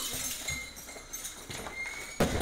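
Bare feet stepping and thudding on a judo mat as two judoka grip and move into a throw, with two dull thumps about half a second and a second and a half in.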